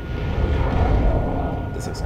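Deep, steady rumble of fire and explosions from a fantasy battle scene's soundtrack.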